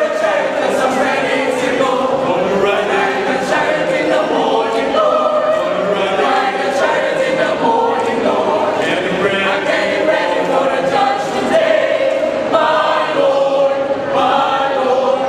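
A mixed choir of men's and women's voices singing together in several parts, one continuous sung passage.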